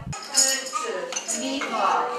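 Crockery clinking, loudest about half a second in, with children's high voices chattering near the end.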